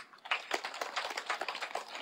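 Audience applauding: a fairly faint patter of many quick hand claps that starts about a third of a second in.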